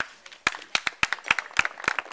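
A small audience clapping, with sharp, separate claps that pick up about half a second in and come several to a second.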